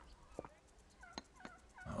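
Faint background ambience of short bird calls, with a few light clicks.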